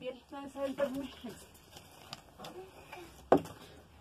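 Light handling noises, with a few soft words in the first second, then a single sharp knock a little over three seconds in: a small object dropping.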